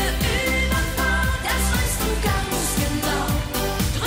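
German Schlager pop song: a woman singing over a band with a steady drum beat.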